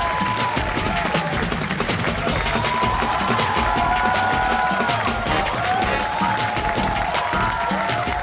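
Closing theme music with a steady drum beat under a melody of long held notes.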